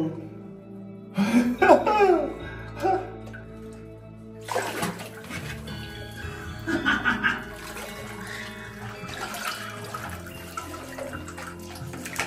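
Water sloshing and splashing as a caver swims and pulls through a flooded, low-roofed cave passage, with brief voices about a second in.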